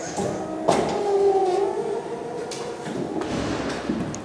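Elevator machinery running with a steady whine, starting about a second in just after a button on the lift's control panel is pressed.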